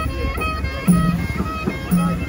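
Traditional Epirus folk music led by a clarinet, playing a wavering melody over low bass notes that fall about once a second.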